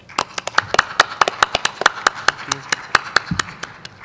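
A small group clapping: sharp, separate claps at about seven or eight a second with uneven spacing, thinning out near the end.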